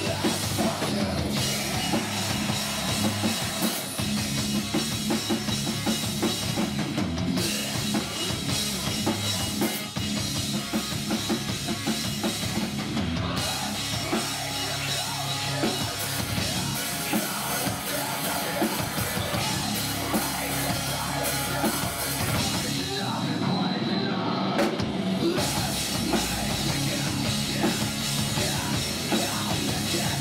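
A rock band playing live in heavy-metal style: electric guitars over a drum kit, dense and continuous.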